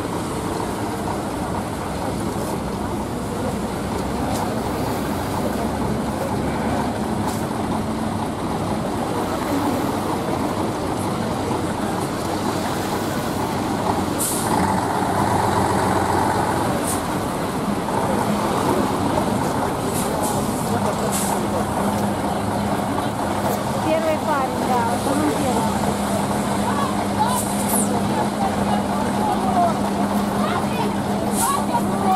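Large vehicle engines idling with a steady low hum, among them buses and a police truck, under street traffic noise. Scattered sharp clicks and knocks come through in the second half.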